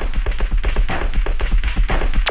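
Electronic dance-pop track in a muffled, treble-cut passage: a fast run of short percussive hits, about ten a second, over deep bass.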